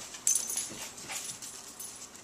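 A puppy scrabbling at a wire pet gate: a sharp metallic clink about a quarter of a second in, then scattered light taps and scratches.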